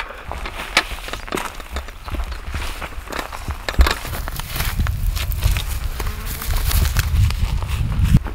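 Footsteps crunching on dry straw stubble, with scattered crackles and one sharper knock a little before the midpoint. A low rumble on the microphone builds in the second half.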